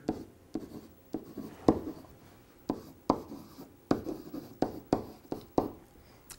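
Marker writing on a whiteboard: a run of short, uneven strokes and taps as letters are written.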